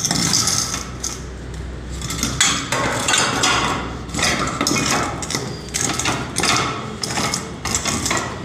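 Hammering: an irregular run of knocks and clatter, about one or two blows a second.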